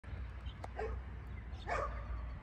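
Two short animal calls, the second louder, over a steady low rumble.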